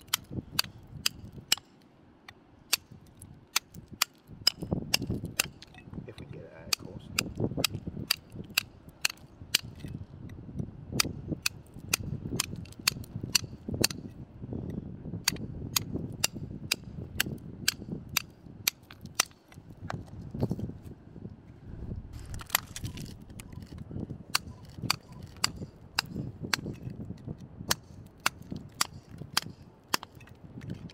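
Steel hammer striking a cold chisel into a rock ledge again and again, sharp ringing strikes at a steady pace of about one to two a second, chipping the rock away.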